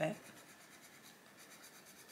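Arteza Expert coloured pencil scratching faintly on paper in quick, even strokes as a leaf edge is shaded and tidied.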